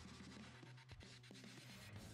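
Quiet background music with faint scratching, a pen-writing sound effect.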